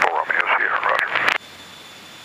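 Voice over the aircraft radio/intercom for about the first second and a half, then the headset channel's steady hiss with a faint high tone.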